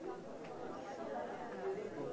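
Many people in a large room talking at once, overlapping conversations blending into a steady murmur of chatter with no single voice standing out.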